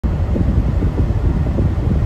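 Steady low rumble of tyre and wind noise heard inside a car cruising at highway speed.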